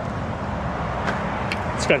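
Steady outdoor background noise: a low, traffic-like rumble and hiss, with a couple of faint clicks about a second in.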